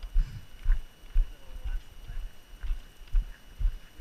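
A hiker's footsteps on a gravel trail: a steady walking rhythm of about two steps a second, each a low thud, with light crunches of gravel.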